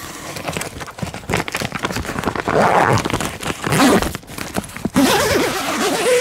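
Reinforced plastic greenhouse sheeting crackling and rustling as it rubs against the microphone. A few short squeaky pitched sounds come through near the middle and towards the end.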